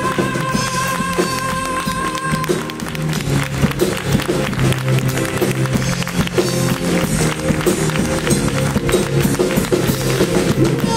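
Live copla band of drum kit and piano. A long held high note ends about two and a half seconds in, and then drums and piano carry on with a rhythmic instrumental passage without voice.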